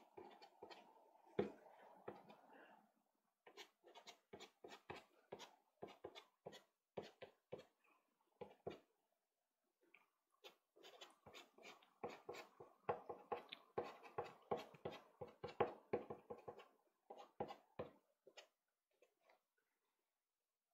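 Soft pastel stick scratching in short, quick strokes on sanded pastelmat, faint, with runs of two to four strokes a second that grow denser in the second half.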